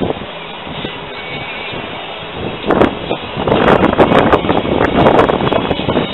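Outdoor background noise: a steady low rumble that gets much louder and gustier a little past halfway, with wind buffeting the microphone and crackling.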